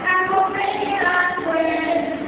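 Amateur karaoke singing over a backing track, with voices holding drawn-out notes.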